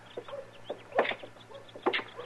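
Chickens clucking in a handful of short, separate calls, the strongest about a second in and near the end: a barnyard sound effect in a vintage radio drama.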